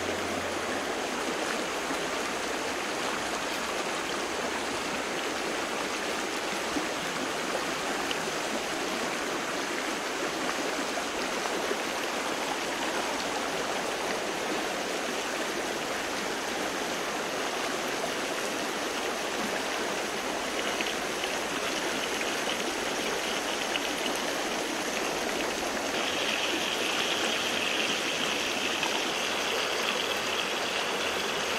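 A stream running steadily, an even rush of water. A higher, steady hiss joins about two-thirds of the way through and grows louder near the end.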